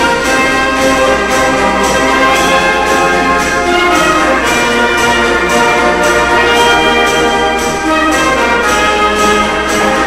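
Military band brass, trumpets and trombones, playing a TV theme tune over a steady beat, played back from a 1972 vinyl LP.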